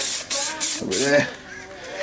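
Aerosol can of high-build plastic primer filler spraying a short burst onto a plastic bumper, a hiss that ends about half a second in.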